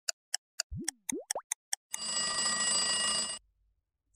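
Countdown timer sound effect: a clock ticking about four times a second, with two quick rising cartoon-like glides, then a ringing buzz for about a second and a half that cuts off suddenly, signalling that the time is up.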